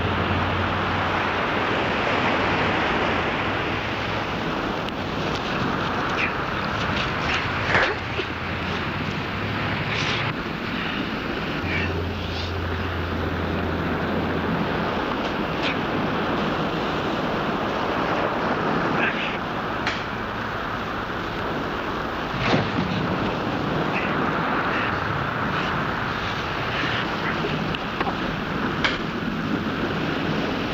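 Steady wash of surf and wind noise, broken by a few sharp knocks.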